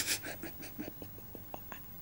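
A few faint, scattered clicks and taps of small objects being handled on a tabletop.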